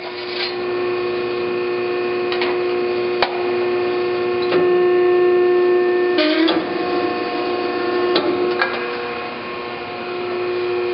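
Hydraulic power unit of a 35-ton Metal Muncher II MM35 ironworker running with a steady hum while its press brake attachment bends a strip of sheet metal. Sharp clicks come every second or two, with a short metal clatter and a brief dip in the hum about six seconds in.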